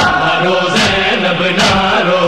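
A male chorus chanting the lament of an Urdu noha in held, drawn-out notes, with a steady beat about once a second.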